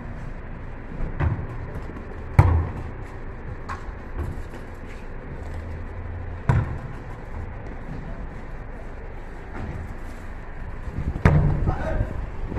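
A rubber ball striking a wall and bouncing on paving: several sharp single hits spaced a few seconds apart, the loudest about two and a half seconds in.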